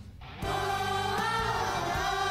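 Children's choir entering about half a second in on a long held chord of many voices, over an instrumental backing track with low sustained tones and drum hits.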